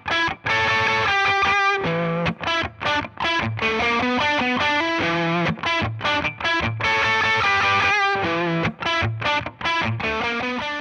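Electric guitar played through a Fender Pugilist Distortion pedal: a distorted riff of chords and single notes with short breaks between them, repeating about halfway through.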